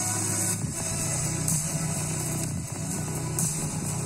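Music with strong, sustained bass notes playing through a JBL Go 3 portable Bluetooth speaker with its grille removed, as a bass test.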